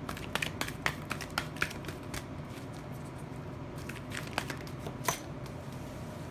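Tarot cards being shuffled and handled: a quick run of light flicks and snaps over the first two seconds, then a couple of single clicks near the end.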